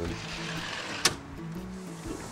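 Sliding patio-door screen run along its track, followed by one sharp click about a second in, over soft background music.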